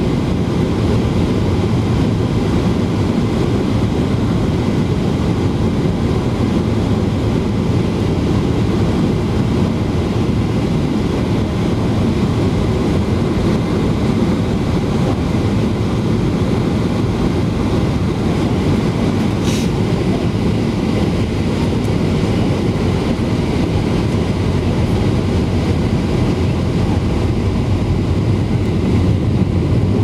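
Steady cabin roar inside a Boeing 737-800 on its descent, engine and airflow noise heaviest in the low end and unchanging in level. A brief click sounds about two-thirds of the way through.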